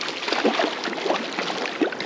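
Hooked brown trout thrashing at the surface of a shallow creek, a run of irregular water splashes.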